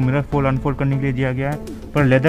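A man's voice talking, words not made out; no sound other than the voice stands out.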